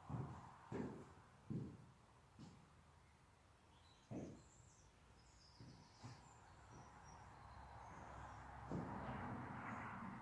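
Quiet room with a few soft, low thuds spaced irregularly through the first six seconds, and faint bird chirps from outside around the middle.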